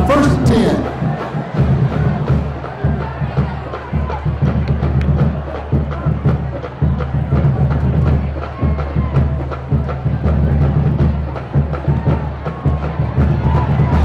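Crowd noise from the stands mixed with band music and drum hits, with irregular drum strokes over a steady low din.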